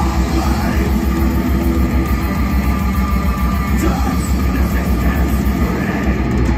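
Metal band playing live at full volume: distorted electric guitars and bass over drums, a dense, unbroken wall of sound.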